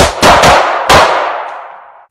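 Handgun fired four times in quick succession, all within about a second, each shot followed by a long echo that fades over the next second.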